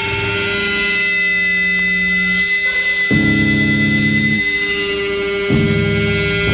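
Hardcore punk recording: distorted electric guitars hold ringing chords over bass, with a steady high feedback-like tone on top. The chords change about three seconds in and again near the end, with no vocals.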